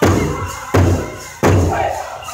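Powwow big drum struck in unison by several drummers with drumsticks: three loud beats about three-quarters of a second apart, each booming and dying away before the next.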